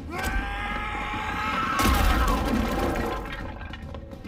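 A man shouting, one long drawn-out yell that falls slightly in pitch, then a loud crash and scuffle about two seconds in.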